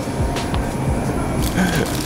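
Background hip-hop-style music with a steady beat.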